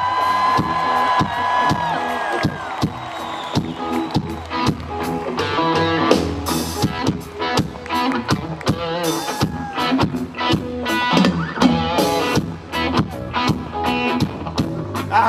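Live rock band with electric guitars, bass and drum kit playing loud through a festival PA, heard from the front row. A long high note is held over the band for the first two to three seconds and ends; after that come steady drum hits and guitar riffs.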